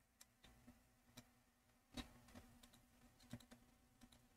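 Near silence broken by a few faint, short computer clicks. The clearest comes about two seconds in and another near three and a half seconds.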